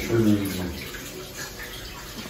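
A steady hiss of background noise, with a low man's voice murmuring briefly at the start.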